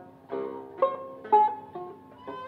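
Turkish long-necked tanbur being plucked: a slow phrase of about four single notes, each ringing and fading before the next.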